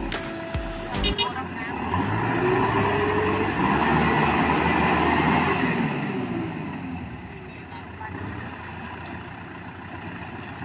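Farm tractor engine revving up and holding high revs for a few seconds, then easing off, as the tractor strains while bogged down in deep mud.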